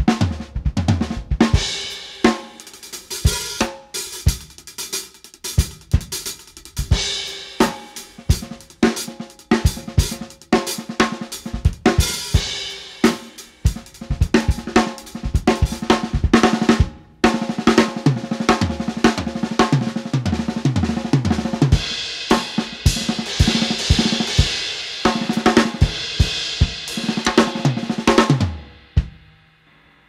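Acoustic drum kit played solo: rapid snare strokes, bass drum and cymbals in grooves and fills built mostly on six-stroke rolls mixed with other rudiments. The playing stops about a second before the end and a cymbal rings out.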